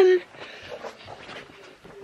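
A boy's drawn-out last word ends just after the start, followed by faint rustling and light knocks from a handheld camera being carried as he walks off.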